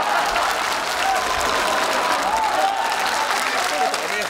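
Studio audience applauding steadily, the entrance applause as two performers come on stage, with a faint voice over it.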